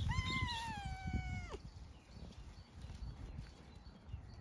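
A black-and-white domestic cat meows once: one long call of about a second and a half that falls slightly in pitch and drops away sharply at the end.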